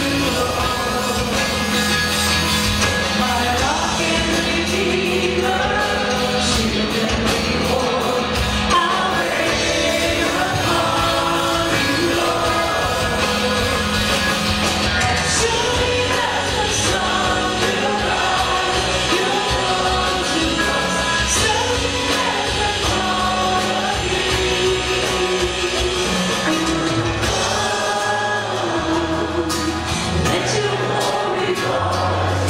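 Live worship band playing a song: drums, bass, electric and acoustic guitars and keyboard under a male lead singer with backing singers, at a steady full level.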